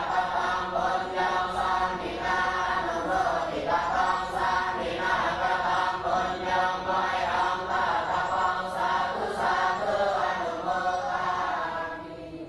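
Buddhist chanting: a group of voices chanting in unison, syllable after syllable in a steady rhythm, beginning to fade out near the end.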